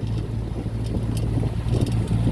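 Boat motor running with a steady low hum as the boat gets under way, with wind on the microphone.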